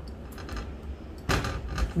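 Faint handling noises of cut green plantain pieces being set down on a ceramic plate: a few soft knocks, with a louder scrape or knock near the end.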